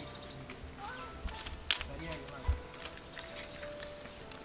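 Dry twigs being handled as a fire is lit in a pile of sticks, with scattered small clicks and snaps and one sharp snap about halfway through.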